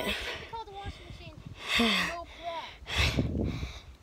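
A person sighs about two seconds in, amid short, faint bits of speech, followed by a heavy, breathy exhale near the end.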